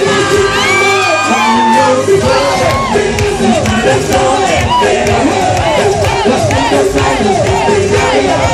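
A concert crowd shouting and cheering over loud live music, many voices at once; the deep bass drops out for the first couple of seconds, then comes back in.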